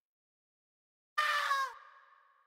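A short vocal ad-lib sample for a drill beat, a shouted voice line played once on its own about a second in. It lasts about half a second with a slightly falling pitch and trails off in an echo.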